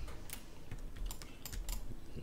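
Computer keyboard and mouse clicks: a handful of sharp, scattered clicks.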